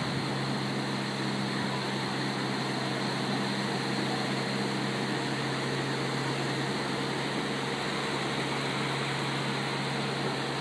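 Surf washing steadily on the beach, with a steady low motor drone under it; one of the drone's tones drops out about halfway through.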